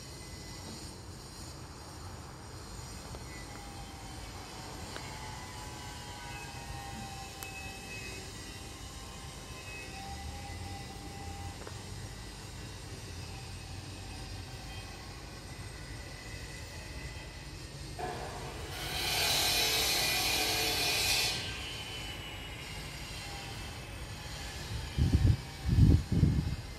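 Steady low outdoor rumble with faint, drawn-out whining tones. About 18 seconds in, a loud hiss starts suddenly and stops after about three seconds. A few heavy low thumps come near the end.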